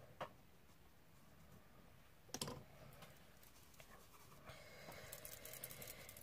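Near silence with a few faint clicks and taps: a paintbrush and a small paint pot being handled on a craft desk. The loudest tap comes about two and a half seconds in, and a faint rustle with small ticks follows near the end.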